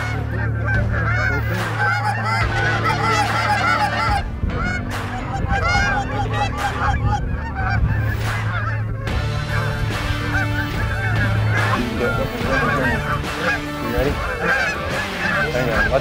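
A flock of Canada geese honking, with many overlapping calls throughout.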